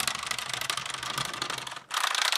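Wooden gear train of a wound-up Ugears Research Vessel model chattering with rapid, fast clicks as it drives the ship along under its own power. It stops suddenly just before the end.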